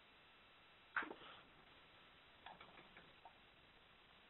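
Near silence on a telephone conference line, broken by one brief sharp noise about a second in and a few faint clicks a little later.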